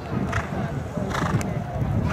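A show-jumping horse landing from a fence and cantering on turf, its hoofbeats coming as a few short thuds, with crowd voices in the background.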